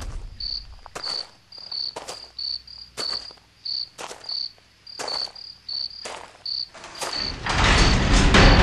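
Crickets chirping in short high chirps, about two a second, over soft knocks that come roughly once a second. Near the end a louder rushing noise swells in.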